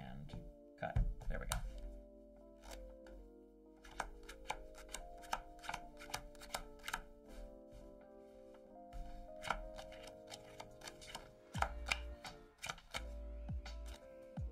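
Background music with sustained notes, over a run of irregular sharp clicks and taps from playing cards being shuffled, cut and dealt.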